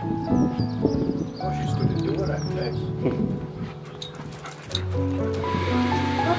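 A German Shepherd whimpering and whining in short wavering cries over a background song for the first three seconds or so. A few sharp clicks follow.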